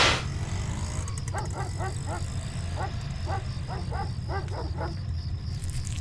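A dog barking in several quick runs of short barks, over a steady low rumble of night ambience.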